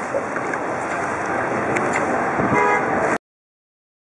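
Steady outdoor noise with a short vehicle-horn honk about two and a half seconds in, then the sound cuts off suddenly a little after three seconds.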